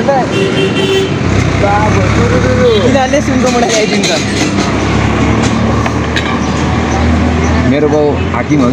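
Road traffic under people's talk: a short horn toot about half a second in, then a steady low vehicle engine rumble from about a second in.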